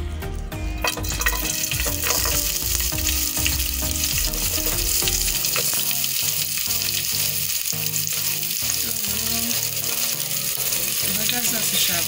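Sliced onions frying in hot oil in a pot: a steady sizzling hiss that starts about a second in, when they go into the oil.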